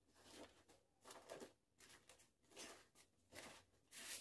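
Faint, brief rustles of a thin plastic bag being pulled off a Wi-Fi router, a few soft crinkles against near silence.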